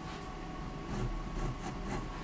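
Fine-tipped fineliner pen scratching on paper in a few short, quick strokes, over a steady low hum.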